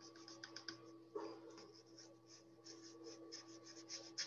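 Faint handling of a small paper-and-cardstock craft piece by hand: a string of light scratchy ticks and rustles, with a soft knock about a second in. A steady low hum sits underneath.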